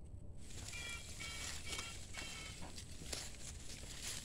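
A run of about six faint short chirps in the first half, over light rustling and a low steady hum.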